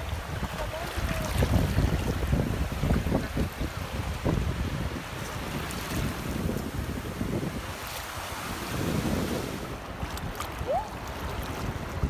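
Small sea waves washing up and foaming over the sand at the water's edge, with wind rumbling on the microphone in uneven gusts.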